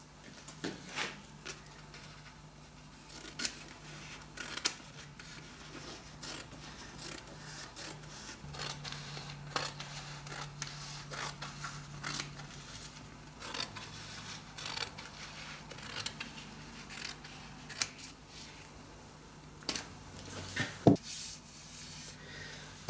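Scissors snipping through a sheet of glue-damp printed wallpaper: a scattered series of cuts and paper rubbing as the overhang is trimmed roughly to shape, with one sharper click near the end.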